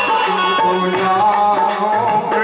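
Indian devotional music: a sung melody over a steady hand-drum beat.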